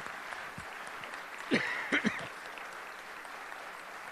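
Audience applauding steadily, a dense patter of claps, with a single voice calling out briefly above it about a second and a half in.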